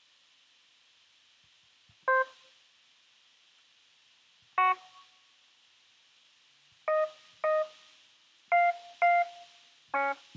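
GarageBand's Classic Electric Piano sound, played from laptop speakers as single short notes triggered from a MIDI button-pad controller. There are six brief notes at different pitches: two spaced well apart, then two quicker pairs near the end.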